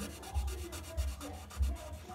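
Felt-tip permanent marker rubbing back and forth on paper as a design is coloured in, with soft low bumps about twice a second.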